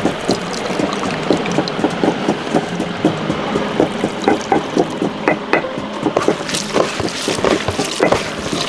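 Hands mixing and squeezing chopped raw snakehead fish in a stainless steel tray: irregular wet squelches and soft taps against the metal, a few a second.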